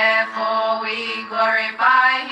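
Recorded Coptic Orthodox hymn sung by girls' voices together, in flowing phrases over a steady held low note, with short breaths between phrases.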